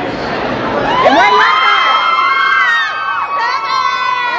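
A group of girls cheering and screaming together, many long high-pitched screams overlapping from about a second in.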